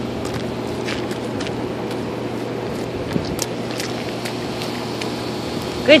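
A steady mechanical hum with a few faint, light splashes of a toddler's boots shuffling in a shallow puddle.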